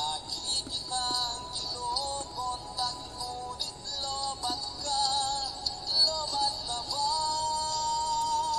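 A Tagalog love song: a solo voice sings a melody with wavering vibrato over a backing track, settling into a long held note about seven seconds in.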